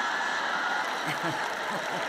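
Large audience laughing and clapping together, a steady even crowd noise with scattered voices in it.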